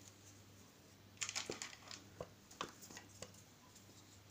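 Faint handling noises: a quick run of crinkles and light clicks for about two seconds after a quiet first second.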